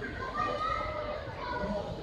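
Background chatter of many people, with children's voices among them, none of it near enough to make out.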